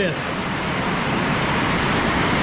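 Heavy rain downpour, a loud, steady hiss of rain that holds at one level.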